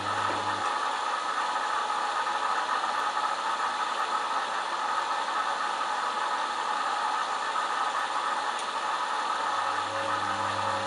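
Candy Smart Touch front-loading washing machine in its Bed Linen wash. The drum motor's low hum stops about half a second in, and the drum rests in the pause of its slowed tumble-and-pause wash action while a steady hiss carries on. The motor hum starts again right at the end.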